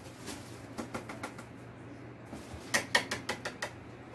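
Plastic film wrapped around round wall niches crinkling and crackling as hands handle it in a cardboard box. It is a scatter of light crackles with a denser cluster about three seconds in.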